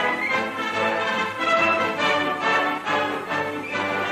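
Orchestral background music, several notes held together in a steady swell.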